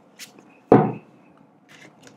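A deck of tarot cards being handled for shuffling: a short card rustle, then a single knock about three-quarters of a second in, followed by faint shuffling.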